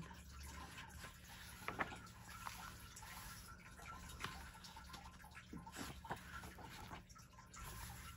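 Faint paper rustling and scattered soft ticks as coloring-book pages are turned and smoothed flat by hand.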